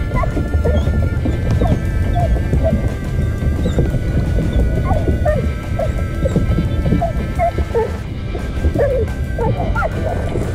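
Background music, with a Border Collie whining in many short, separate cries over it.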